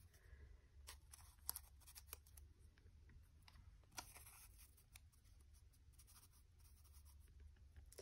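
Near silence with faint paper handling: a few light clicks and rustles as small paper scraps are picked up and laid onto a collage page.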